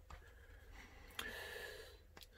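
Quiet room tone with a steady low hum and a single sharp click just over a second in.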